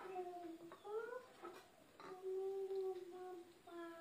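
A voice humming a tune in long held notes, with a few short upward slides between them.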